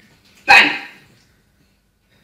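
A small dog gives a single sharp bark.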